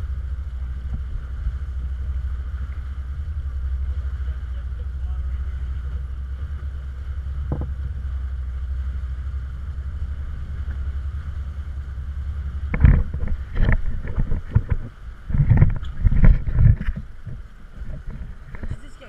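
Catamaran under way through open water, heard from a camera on its bow crossbeam: a steady low rumble, then from about thirteen seconds in a run of loud, irregular bursts of noise.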